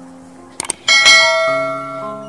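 Subscribe-button sound effect: two quick clicks, then a bright notification-bell ding about a second in that rings and fades, over soft background music.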